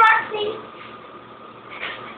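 A young child's voice, a short burst of vocalising at the start and another brief sound near the end, with a faint steady tone underneath.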